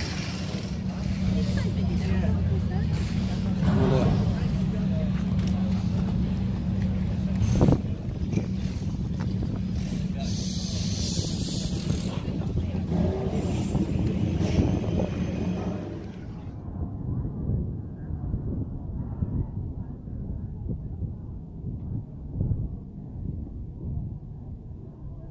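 Outdoor background of indistinct voices over a steady low mechanical hum, with one sharp knock about eight seconds in. For the last several seconds the sound turns duller and quieter.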